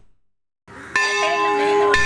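Silence at a cut, then church bells ringing from about a second in, several steady tones sounding together.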